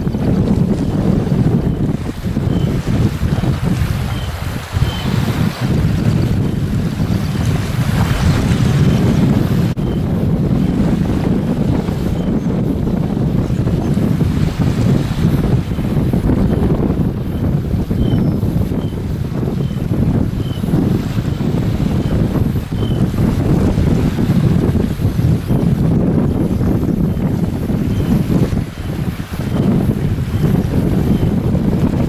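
Wind buffeting the microphone in a steady low rumble, over small waves lapping at the water's edge.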